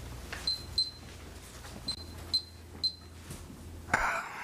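About five short, sharp clicks, each with a brief high-pitched ring, coming at irregular intervals over a steady low hum.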